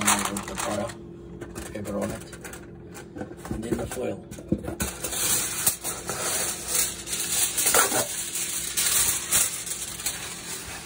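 Parchment paper rustling and crinkling as a sheet is spread and pressed down over a roasting tray, a dense crackle of small ticks that grows stronger about halfway through.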